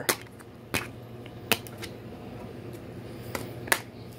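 Plastic DVD case being handled, giving about five sharp, separate clicks at uneven intervals.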